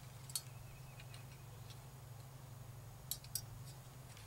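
Light metallic clicks and ticks of a thin wire grill frame being handled and fitted: one sharp click just after the start, a few faint ticks in the middle, and two more clicks close together about three seconds in, over a steady low hum.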